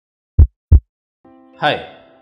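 Heartbeat sound effect: one lub-dub pair of deep thumps, then soft background music starts about a second in, and a man says "Hi" near the end.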